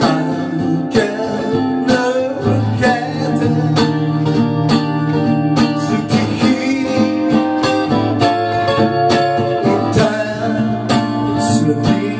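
Steel-string acoustic guitar strummed in a steady rhythm, live and unaccompanied by other instruments, with a man's voice singing over parts of it.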